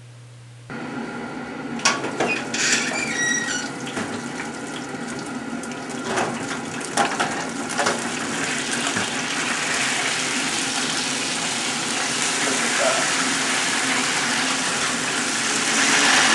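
A few knocks and clatters as a roasting pan is pulled from a hot oven, then a steady sizzling hiss from the freshly roasted chicken and its hot pan that slowly grows louder.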